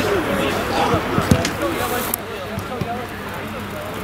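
Players' voices calling across an outdoor football pitch, with a few sharp thuds about a second in, typical of a football being kicked.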